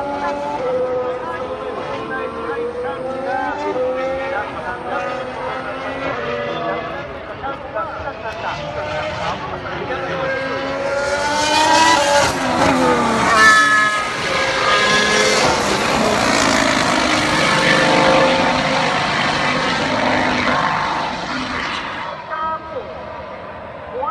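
Racing cars going past close by on the circuit. Engine notes rise as they accelerate about twelve seconds in, and the sound stays loud for about ten seconds before dying away near the end.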